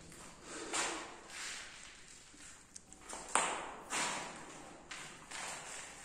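Footsteps scuffing over a gritty, debris-strewn floor at a slow walking pace, roughly one step every two-thirds of a second, with a sharper step a little past three seconds in.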